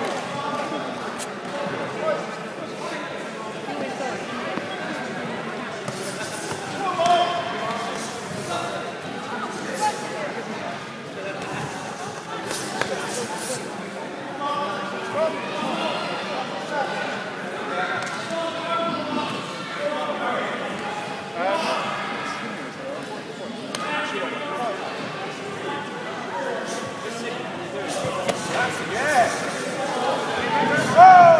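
Shouting from spectators and corners over a kickboxing bout in a sports hall, with scattered thuds of gloved punches, kicks and feet on the floor mats.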